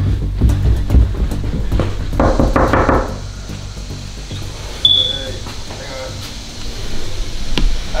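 Knuckles rapping on a closed interior door, a quick run of knocks about two seconds in, over background music.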